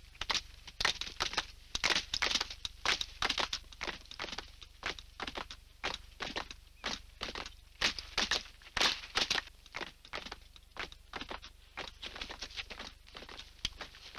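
Dancers' feet stamping and scuffing on dry grassy ground, an uneven run of short beats about three a second.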